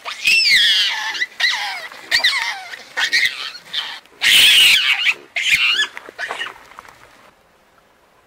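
Hamadryas baboons screaming in a series of shrill, falling screeches, several bouts with short breaks between them, loudest about four seconds in: the calls of a tense squabble within the troop.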